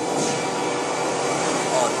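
Steady, loud background noise with faint voices in it near the end.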